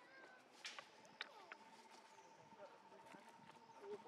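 Faint outdoor ambience: a steady, rapidly pulsing high trill starts about half a second in, with a few sharp clicks early on and some short chirps.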